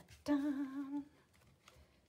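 A woman sings one held "daaa", the last note of a "da, da, da" reveal flourish, for under a second at a steady pitch. A couple of faint taps follow near the end.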